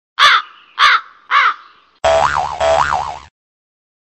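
Three short, harsh, caw-like calls about half a second apart, then a wavering, pitched sound effect lasting just over a second that cuts off suddenly. These are sound effects dropped onto an otherwise silent track.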